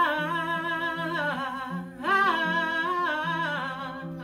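Woman singing a wordless melody in two long phrases of held notes with vibrato, over steady acoustic guitar accompaniment.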